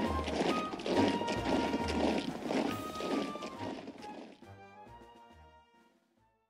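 Military marching-band music with a recurring low drum beat, fading out over the last two seconds.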